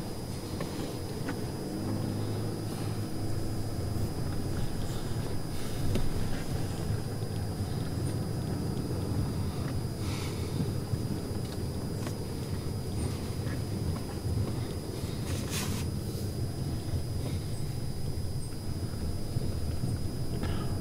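Car engine running steadily at low revs, a low drone heard from inside the car, with a couple of brief knocks partway through.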